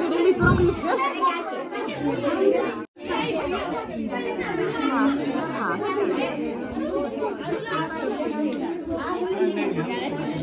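Many people talking at once in a room: steady crowd chatter. There is a low thump just after the start, and the sound cuts out for a moment about three seconds in.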